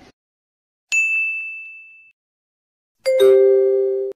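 Two edited-in sound effects. About a second in there is a single bright ding that rings out and fades over about a second. Near the end comes a loud, steady two-note honk like a vehicle horn, which cuts off abruptly.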